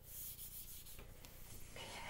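Felt whiteboard eraser rubbing across a whiteboard, a faint scrubbing as marker is wiped off.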